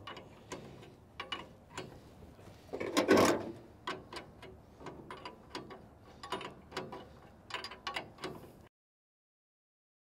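Wrench tightening the steel adjusting bolts of a cracker plate on a John Deere forage harvester: irregular metallic clicks and clinks, with one louder clank about three seconds in. The sound cuts off suddenly near the end.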